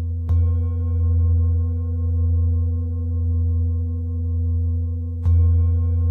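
Large Tibetan singing bowl, set on a person's lower back, struck with a mallet twice about five seconds apart. Each strike rings on as a deep low hum with higher overtones, slowly swelling and ebbing in loudness.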